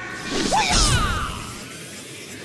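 Intro sound effect: a whoosh that swells into a hit a little under a second in, over music, then slowly fades.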